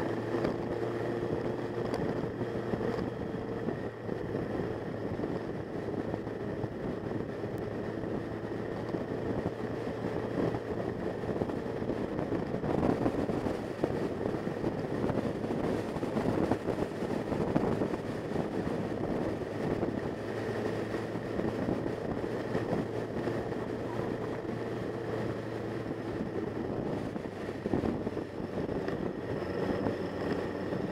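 Motorcycle engine running steadily at cruising speed, heard from a camera mounted on the moving bike, with wind and road rush over the microphone.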